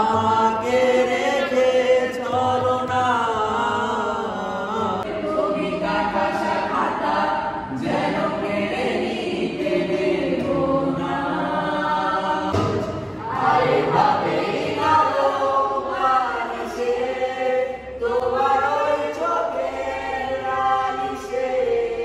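Young men singing a song together without accompaniment, in drawn-out, wavering notes.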